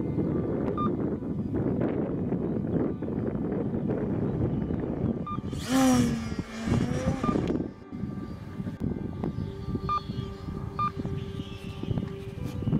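Electric F5B RC glider motor and propeller: a loud whine with many overtones that dips in pitch, about six seconds in, over a steady rushing noise. Short electronic beeps sound several times.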